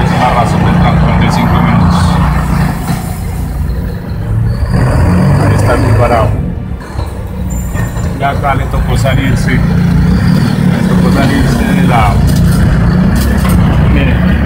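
Interior of a moving TransMilenio bus: steady low engine and road rumble, with passengers' voices over it and a brief drop in level about halfway through.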